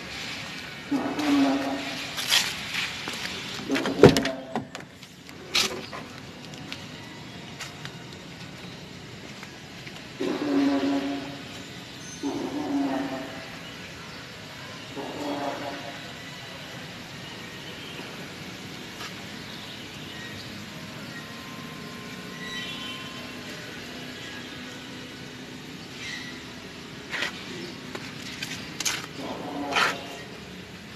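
Indistinct voices in the first few seconds and again about ten to sixteen seconds in, with one sharp knock about four seconds in and a lighter one a second later, over a steady low background hum.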